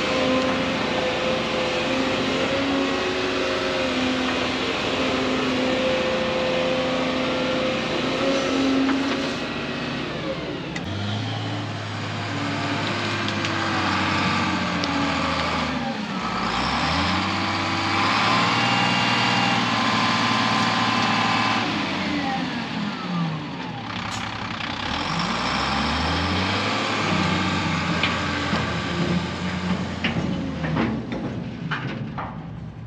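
A Volvo EC220E excavator's diesel engine running under hydraulic load for about the first ten seconds. Then a Volvo A25 articulated dump truck's diesel engine runs, its revs dropping and rising again several times as it raises its bed to tip a load.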